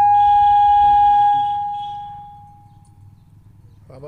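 Public-address microphone feedback: a loud, steady high-pitched howl that holds for about a second, then fades away over the next second or so.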